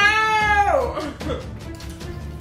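A high, drawn-out vocal note that holds level, then slides down in pitch and stops a little under a second in, over background music.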